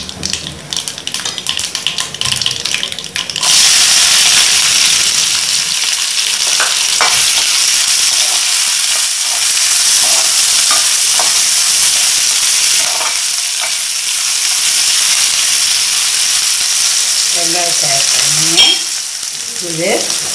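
Hot oil sizzling in a nonstick kadai, first lightly with a tempering of dried red chillies and dal and clicks of a spatula. About three and a half seconds in, chopped onions go into the oil and the sizzle turns suddenly loud and stays steady while they are stirred.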